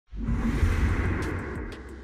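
Broadcast-intro whoosh sound effect: a noisy rushing sweep over a deep rumble that starts abruptly and slowly fades away, with a few short sharp clicks in its second half.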